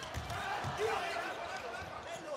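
Volleyball rally in a packed indoor arena: steady crowd noise with a few low thumps of the ball being played.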